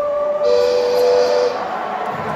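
Live concert music in a large hall, heard through a phone microphone: a single held note with no beat under it. The note steps down in pitch about half a second in and fades after about a second.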